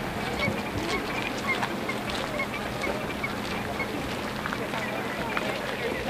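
A flock of geese honking in flight, with short calls coming irregularly and often overlapping.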